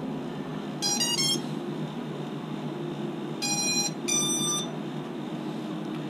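Electronic startup beeps from a racing quadcopter's ESCs as the flight battery is plugged in. A quick rising run of short beeps comes about a second in, then a lower and a higher longer beep near the middle, the tones that signal the ESCs have powered up and found the receiver's signal.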